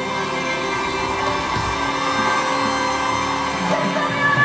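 Live band music: an instrumental passage of steady, sustained chords with no singing.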